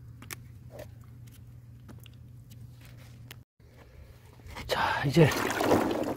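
Peanuts in their shells being scrubbed together by a gloved hand in a tub of muddy water, a loud wet sloshing and rubbing that starts near the end. Before it there is only a faint steady hum.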